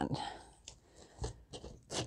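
Faint rustling and small scattered crinkles of a folded paper slip being handled and worked open.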